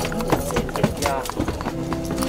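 Noisy crowd in a cinema hall: overlapping voices with many scattered sharp clicks and knocks, and music underneath that grows more distinct near the end.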